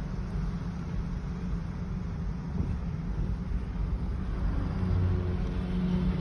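Steady low road and engine rumble of a moving car, heard from inside the cabin, growing a little louder near the end.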